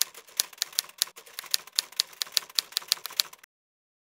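Typewriter sound effect: rapid clacking key strikes, about six a second, as a title is typed out letter by letter on screen. It stops abruptly about three and a half seconds in.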